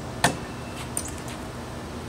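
A thrown axe strikes the end of a wooden log target with one sharp thunk about a quarter second in, followed by a fainter click about a second in. The axe has a handle a few inches longer than suits a 15-foot throw, so it does not land as well.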